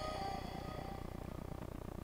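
Faint last tones of a dubstep demo track dying away from a Hifonics 12-inch subwoofer system, leaving a low steady hum.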